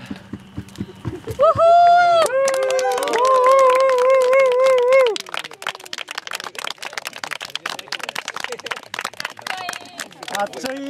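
A small group claps, the applause starting about two seconds in and running on. A voice over it holds a long, loud note for about four seconds that wavers at the end and then stops.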